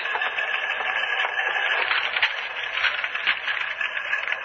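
Teletype machines clattering steadily, a radio-drama sound effect on an old recording with the treble cut off.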